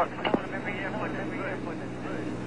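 Air traffic control radio recording between transmissions: a steady hum and hiss from the narrow radio channel, with faint voices in the background and a brief click just after the start.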